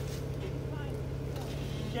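Jeep Wrangler Unlimited's V6 engine running steadily at low revs as the Jeep crawls slowly over a culvert pipe and rocks.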